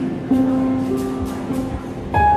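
Live band playing an instrumental passage: strummed acoustic guitar over held keyboard chords, with the chord changing about a third of a second in and again near the end.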